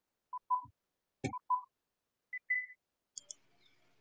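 Old-film countdown leader sound effect: short beeps in pairs, about once a second, with a sharp click about a second in. A single higher beep comes about two and a half seconds in, followed by a couple of faint ticks.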